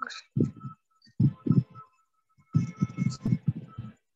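Acoustic guitar played in short, muted, percussive strokes: a string of low thumps, sparse at first and quickening into a dense run about two and a half seconds in.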